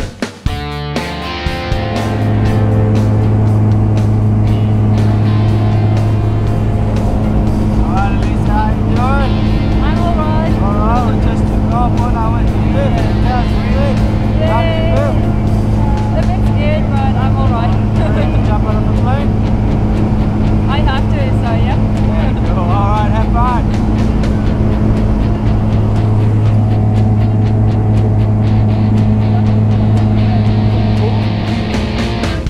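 Steady, loud engine-and-propeller drone of a small jump plane in flight, heard from inside the cabin. Through the middle of the stretch, voices are raised over it.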